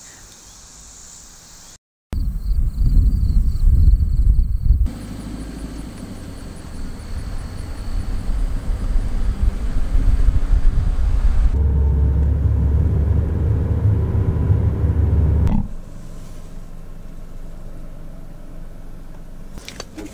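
Low, noisy rumble with sudden changes in level, loudest from about two to five seconds in and again from about twelve to fifteen seconds, with a brief dropout to silence about two seconds in.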